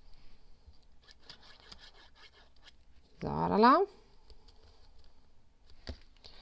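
Faint handling of kraft paper and a fine-tip plastic glue bottle while gluing: light rustles and small clicks throughout. About three seconds in, a woman makes a short hum that rises in pitch.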